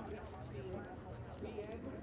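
Indistinct chatter of people talking, over a low steady rumble.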